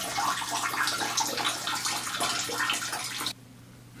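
Water running in a steady rushing stream, cutting off abruptly about three seconds in.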